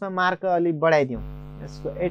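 A steady low hum with a held, even tone comes in about a second in and slowly fades, under a few spoken words.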